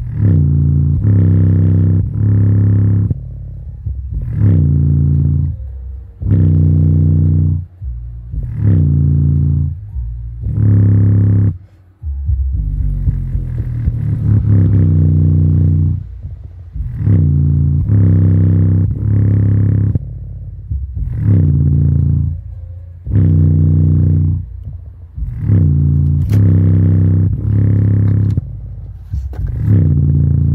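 Bass-heavy music playing loudly through a JBL Boombox 2 portable Bluetooth speaker. Deep bass notes pulse roughly once a second, with short gaps between them.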